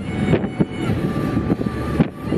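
Noise inside a car's cabin, with irregular knocks and rattles.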